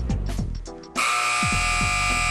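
Music with deep falling bass notes, then about a second in a basketball shot-clock buzzer cuts in: a loud, harsh, steady blare made of many stacked tones, with the music going on beneath it.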